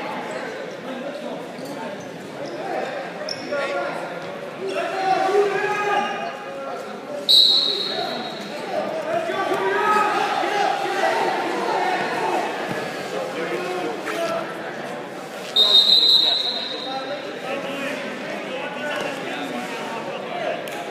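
Voices calling out across a large gym, with a referee's whistle blown twice, a shrill steady blast about seven seconds in and another about eight seconds later.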